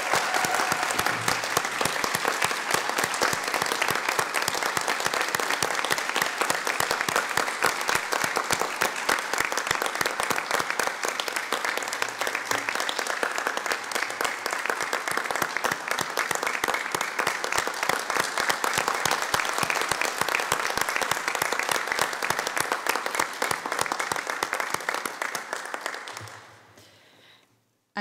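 Audience applauding steadily for about 26 seconds, then dying away near the end.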